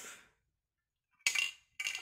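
Two short metallic clinks from aerosol spray paint cans, about half a second apart near the end, each with a brief ring.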